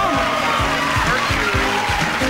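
Upbeat game-show music cue with a fast drumbeat, played over audience cheering.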